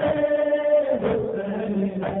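A man's voice chanting a noha (Shia lament) in long held notes, the first ending about a second in and the next held to the end. The recording sounds thin, with no high frequencies.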